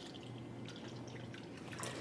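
Faint trickle of water poured from a plastic pitcher into a small plastic cup, with a few drips.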